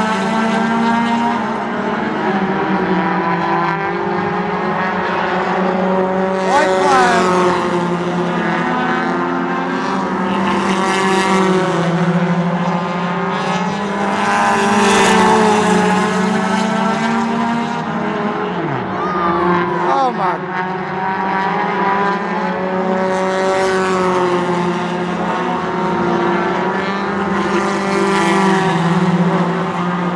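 Race car engines running hard on track, several engine notes at once, pitch rising and falling as the cars lift and accelerate. The sound swells every few seconds as the cars come past.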